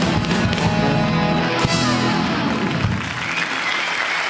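A live rock band with drums, bass, guitars, keyboards and sax playing the closing bars of a song, with a sharp drum hit about one and a half seconds in; the band stops about three seconds in and applause follows.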